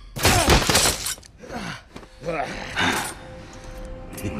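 Film sound effects: a loud crash with shattering debris about a quarter second in, then short strained cries and grunts from the owls, over a held note of the orchestral score.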